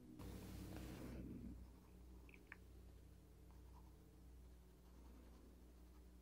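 Near silence: faint room tone with a low hum, a brief soft hiss lasting about a second near the start, and a couple of faint ticks.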